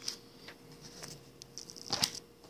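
Thin Bible pages being handled: faint paper rustles and small ticks, with a louder rustle just before the end.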